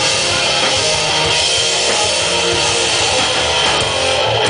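Rock band playing live: electric guitars and a drum kit, loud and steady, recorded from within the crowd.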